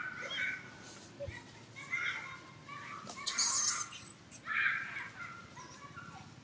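Short, high-pitched animal calls, repeated four or five times, with a loud crackling rustle about three seconds in.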